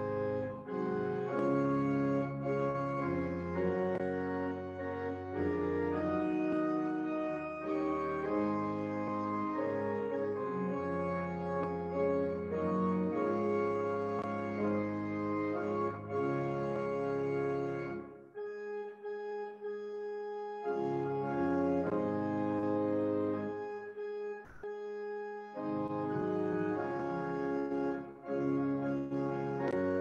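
Pipe organ playing a hymn in slow, sustained chords with a pedal bass line. The bass drops out twice in the latter half, leaving only the upper notes sounding for a few seconds each time.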